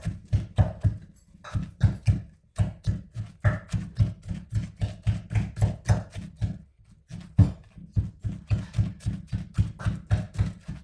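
Wooden pestle pounding wet chili paste in a clay mortar: repeated dull thuds, about three to four a second, with short breaks about a second in and just before the seven-second mark.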